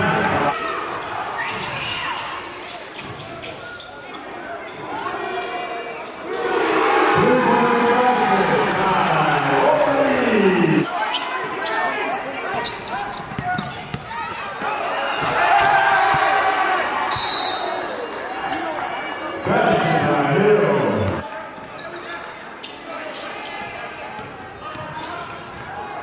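A basketball being dribbled and bounced on a hardwood gym floor during live play, mixed with indistinct shouting voices echoing in a large gym.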